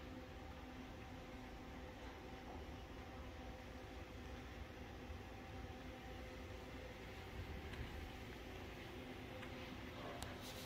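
Quiet room tone: a faint, steady hum with a low rumble and nothing happening in it.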